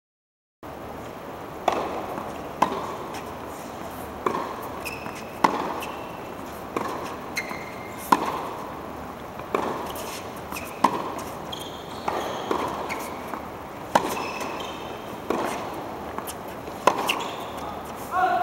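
Tennis ball being hit back and forth in a rally on an indoor hard court: a sharp knock of ball on racket or court about once every second and a bit. Short, high sneaker squeaks on the court come between the shots.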